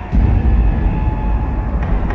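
Sound design of a TV news programme's opening titles: a deep rumble that comes in suddenly just after the start, over dramatic theme music.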